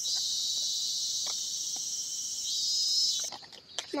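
Steady high-pitched insect chorus with a fine pulsing texture and a few faint clicks, cutting off abruptly a little over three seconds in.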